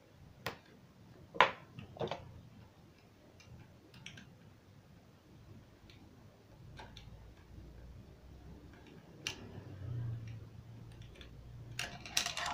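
Scattered small metallic clicks and taps, about seven spread over the stretch with the sharpest about a second and a half in: a screwdriver and fingers working the presser foot loose on a Typical GN 794 high-speed sewing machine.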